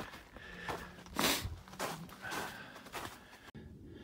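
Footsteps crunching in snow on a hiking trail, five steps about half a second apart, the second the loudest, made by a hiking boot fitted with a rubber slip-on snow traction device.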